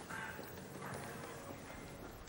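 Quiet opening of a live song: a few soft, held low notes over light tapping knocks, before the singing starts.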